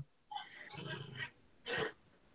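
Faint, brief vocal sounds from a man: a low murmur through the first half, then a short breath-like sound near the end, with dead silence between.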